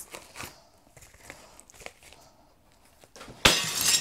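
A yellow paper padded mailer being cut open with a knife: faint scrapes and clicks, then near the end a loud half-second rip and rustle of paper as the envelope is torn open.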